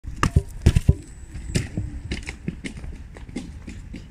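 A few loud knocks as a phone is set down on concrete, then footsteps walking away up concrete steps, about three a second and fading.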